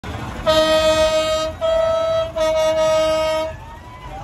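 A loud vehicle horn sounding three steady, single-pitched blasts in quick succession, the first and last about a second long and a shorter one between.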